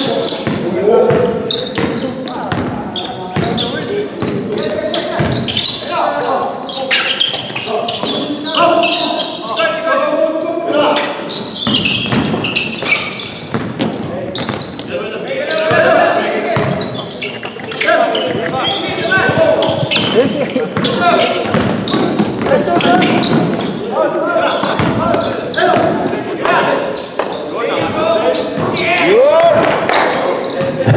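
A basketball bouncing repeatedly on a hardwood gym floor amid players' footfalls and indistinct shouts, echoing in the large gym hall.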